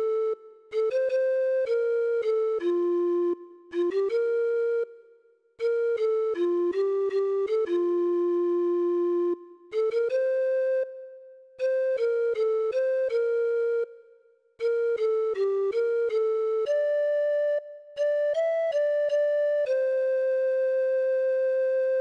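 A single melody played one note at a time in a recorder-like tone, in short phrases with brief pauses between them, ending on a long held note.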